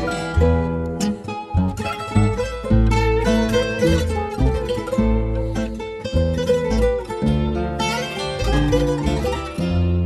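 Instrumental break in a fado song: plucked guitars play a quick melody over steady bass notes, with no singing.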